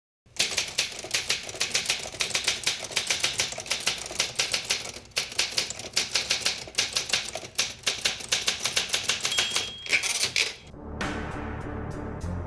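Typewriter sound effect: a rapid, continuous run of key clacks that stops near the end, where music comes in.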